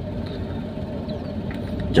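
Steady low rumble of a car engine idling, heard from inside the closed cabin.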